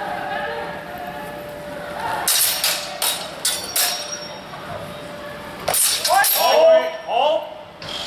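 Longsword blades clashing in a fencing exchange: a quick run of sharp metallic clangs about two to four seconds in, then louder clashes near six seconds, followed by shouting.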